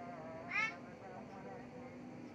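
A cat meowing: one short call that rises in pitch, about half a second in.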